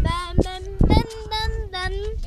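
A child's high-pitched voice in short sung, drawn-out notes, over a low rumble of wind on the microphone.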